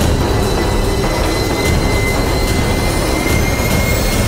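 Dramatic background score: a low, dense rumbling drone under a steady high tone, with a rising whoosh sweeping up near the end.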